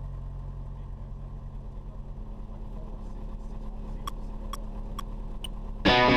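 Light aircraft's piston engine and propeller running steadily, heard from inside the cockpit as a low, even drone. Near the end come four short, sharp ticks about half a second apart.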